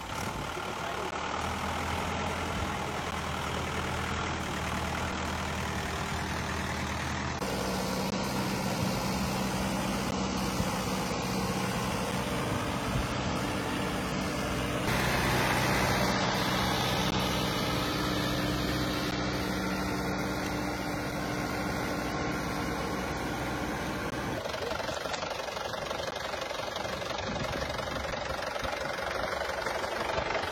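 Diesel farm tractor engine running steadily while working through a flooded, muddy field. Its pitch and loudness shift abruptly a few times.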